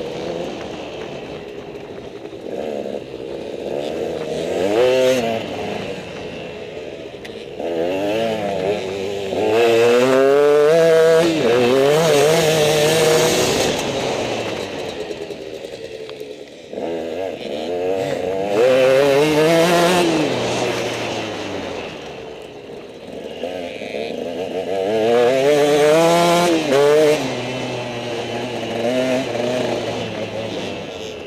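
Motorcycle engines revving hard and rising in pitch through the gears, one run after another, dropping back between them as the bikes lap the track. The loudest runs come about ten seconds in, and again near twenty and twenty-six seconds.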